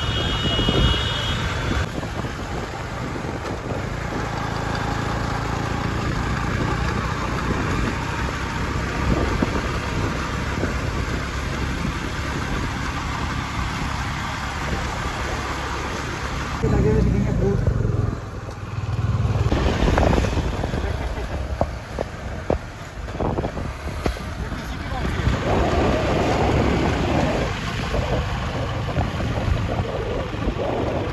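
Road traffic and vehicle engine noise heard from a moving vehicle in a busy street. From about 17 s in, uneven bursts of wind on the microphone come in.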